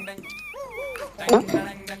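A whiny, wavering whimper lasting under a second, followed about a second and a half in by a short sharp sound.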